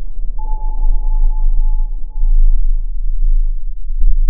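Loud, deep underwater rumble drone of horror sound design. A steady single high tone is held over it from about half a second in until near the end.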